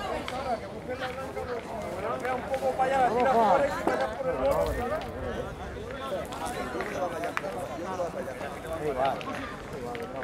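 People talking in the background, an indistinct run of conversation among several voices, louder about three seconds in.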